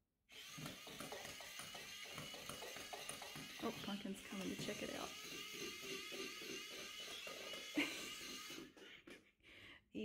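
Motorized toy mouse from a Catch Me Kitty cat toy, running: a small electric motor with a steady high whine over an uneven lower whirr. It starts just after the beginning and cuts off about a second before the end.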